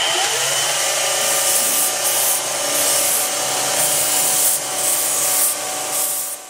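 Belt sander grinding a horn knife handle held against its abrasive belt: a loud, steady sanding hiss with slight swells over the machine's steady hum.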